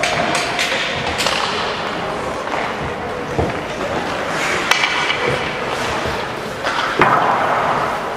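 Ice hockey practice: skate blades scraping and carving on the ice, with sharp clacks of sticks and pucks, the loudest cracks coming about halfway through and near the end.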